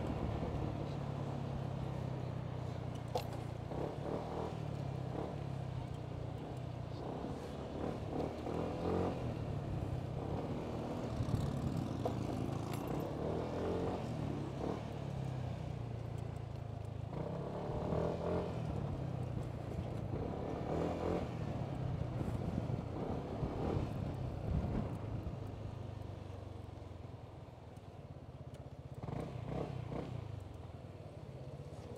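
Yamaha motor scooter's engine running at low speed under the rider, rising and easing with the throttle; it quietens near the end as the scooter slows to a stop.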